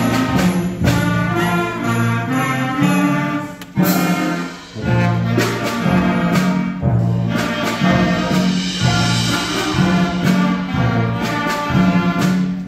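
Student concert band of brass and woodwinds playing under a conductor, with a few sharp percussion strikes along the way and a short drop in volume about four seconds in.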